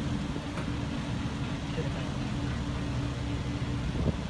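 A steady, low engine hum, like a vehicle idling, with faint voices in the background.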